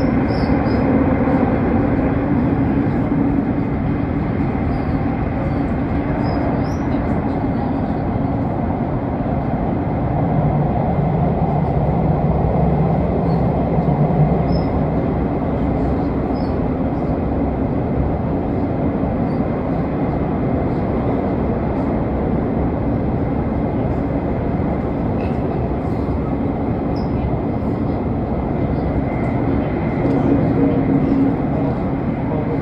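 Elizabeth line Class 345 train running, heard from inside the carriage: a steady rumble with a constant hum. A lower hum comes in for a few seconds around the middle.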